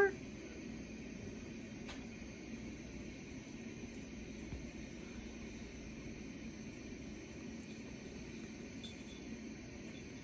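Quiet room tone: a faint, steady low hum with one faint click about two seconds in.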